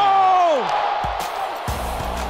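A long, drawn-out, high-pitched celebratory shout that slides down in pitch and fades out under a second in. It is heard over background music, with a low bass coming in near the end.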